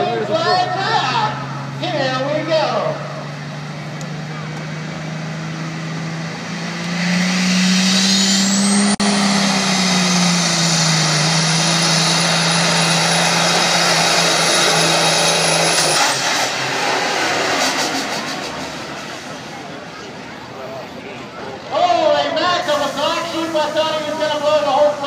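Hot rod semi truck's Caterpillar 3406 diesel engine under full throttle on a sled pull: a steady engine drone swells about seven seconds in, with a high whistle that rises and holds for around eight seconds, then dies away as the pull ends. A PA announcer talks at the start and near the end.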